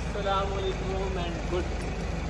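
A woman's voice holding one long, slightly falling vowel for about a second, over a steady low rumble.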